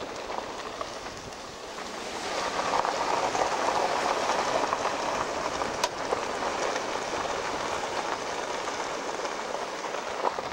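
Tyre and road noise of a van driving on an unpaved gravel road, the tyres crackling steadily over the gravel; it grows louder about two seconds in, with one sharp click a little before six seconds.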